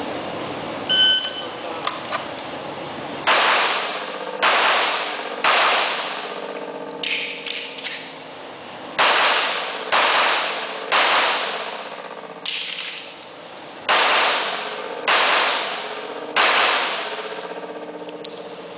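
A shot timer beeps once, then a handgun fires nine shots in three groups of three, about a second apart, each ringing on in the echo of a concrete-walled indoor range. A couple of lighter clacks come between the first and second groups, around seven seconds in.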